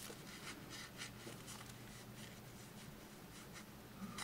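Faint rubbing and rustling of yarn against a paper sticky note as a wrapped tassel is slid off it, a string of soft, short scrapes.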